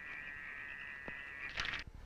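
Faint night swamp ambience of frogs and insects calling in a steady high chorus, with a few faint ticks near the end.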